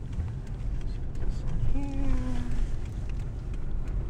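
Car running, heard from inside the cabin: a steady low rumble of engine and road noise. A brief faint voice-like sound rises above it about two seconds in.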